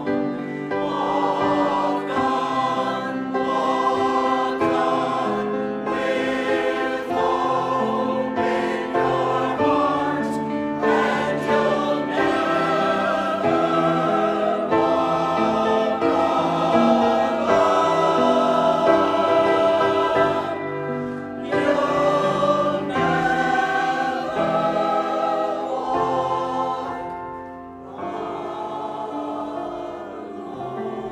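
Mixed church choir singing an anthem, loudest a little past the middle, with a short dip near the end between phrases.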